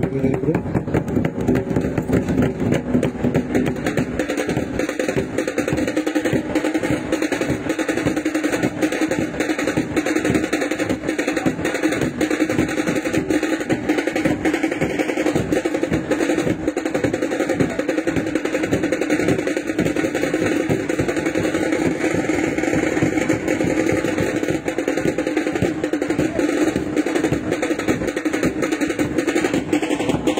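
Large rope-laced barrel drums (dhol) beaten in a loud, fast, steady rhythm.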